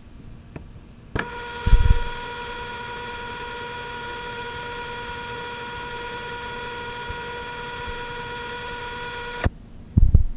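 Playback of an old 3M AVX 60 cassette recording: a click and a low thump, then a steady buzzy tone held for about eight seconds, which cuts off with another click followed by a thump at the very end.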